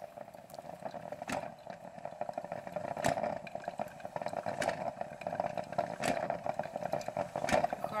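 Electric drip coffee maker brewing: a steady run of irregular, rapid bubbling, broken by a few sharper clicks.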